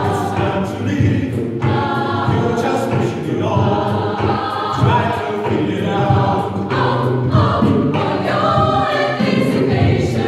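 A choir singing, many voices together in phrases that break off and start again every second or two.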